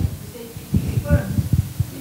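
Muffled, indistinct speech from an audience member away from the microphone, heard mostly as low, boomy thumps with faint traces of voice above.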